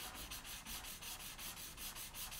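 Faint rubbing of a paper blending stump over pencil shading on drawing paper.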